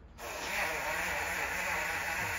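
Battery-powered portable mini blender switching on suddenly just after the start and running steadily, blending banana chunks with milk.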